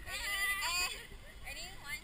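Young women laughing and squealing in high, wavering voices, a long burst in the first second and shorter ones near the end.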